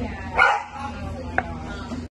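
A single short, loud bark-like animal call about half a second in, over a steady low hum.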